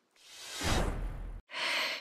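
A person's long breath out, swelling over about a second with air rumbling on the microphone, then cut off suddenly and followed by a short, softer breath in.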